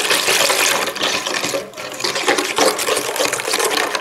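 Milk poured from a jug into a stainless steel bowl of beaten eggs and sugar, splashing as a whisk stirs it in.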